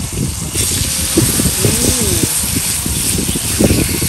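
Sliced meat sizzling in melted butter on a hot brass mookata grill pan, a steady hiss that grows louder about half a second in, with faint background voices and clatter underneath.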